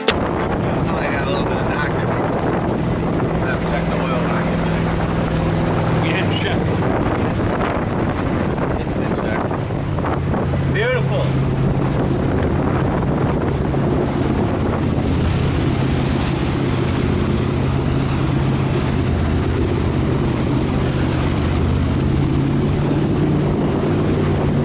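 Motorboat engine running steadily at speed, a low drone under heavy wind buffeting on an unshielded microphone and the rush of water past the hull.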